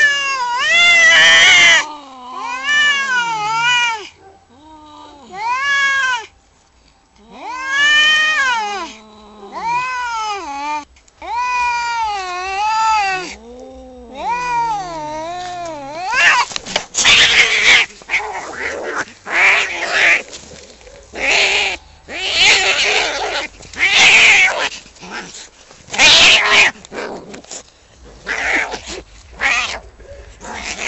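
Two cats caterwauling at each other in a standoff: a string of long, wavering yowls that rise and fall in pitch, with short gaps between them. About halfway through, the yowls give way to short, harsh screeches and noisy bursts in quick succession as the standoff turns into a fight.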